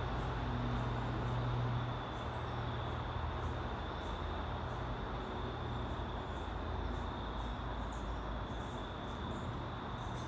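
Steady outdoor background noise: a low hum of distant traffic that eases about two seconds in, under a faint, steady, high-pitched drone of insects.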